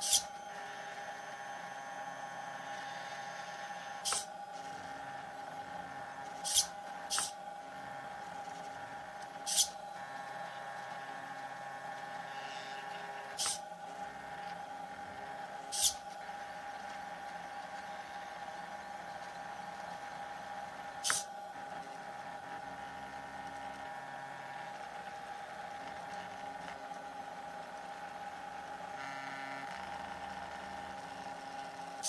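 Stepper motors of a homemade sphere plotter whining at shifting pitches as they turn the bauble and swing the pen arm, over a steady high whine. Sharp clicks every few seconds are the loudest sounds, as the small servo lifts and drops the pen.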